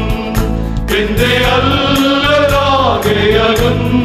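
Men's choir singing a Malayalam Christian hymn, holding a long wavering note through the middle that falls away about three seconds in.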